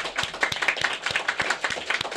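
A small audience clapping in applause, a dense, steady patter of many hands.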